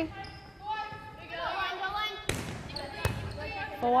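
Volleyball being played in a gym: two sharp ball contacts about three-quarters of a second apart, a little past halfway through, with players' voices calling across the court.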